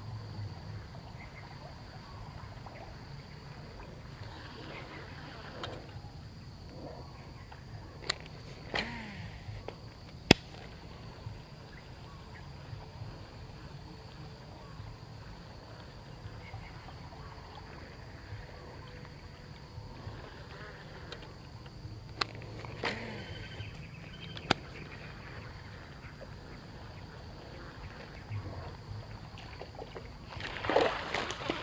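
Faint outdoor plantation ambience with a steady high insect drone. A few sharp clicks break it, three close together about a third of the way in and three more about two-thirds of the way through.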